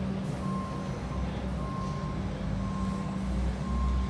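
An electronic warning beeper sounding a single high tone about once a second, each beep about half a second long, over a steady low hum.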